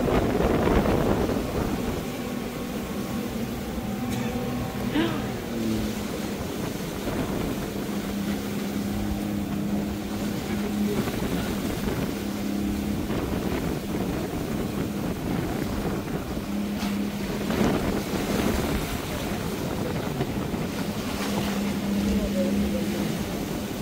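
Small motorboat running at speed over choppy river water: a steady engine drone, with wind buffeting the microphone and water splashing against the hull.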